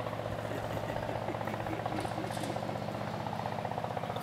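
An engine running steadily with a fast, even pulse.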